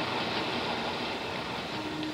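Steady background hiss with a faint low hum, no distinct events.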